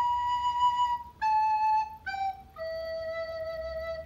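Soprano recorder playing four descending notes, B, A, G and low E. The first two last about a second each, the G is short, and the low E is held longest.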